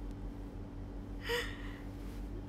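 A woman's short breathy gasp about one and a half seconds in, over a steady low hum.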